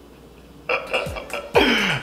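A person laughing. The laugh sets in after a short quiet and ends in a louder burst near the end.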